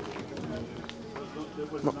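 Mostly a pause in talking: faint voices and outdoor ambience in the background, with a couple of light clicks. A voice starts speaking again near the end.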